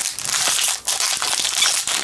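Foil wrapper of a Magic: The Gathering booster pack crinkling and crackling loudly in the hands as it is worked open, a continuous dense crackle.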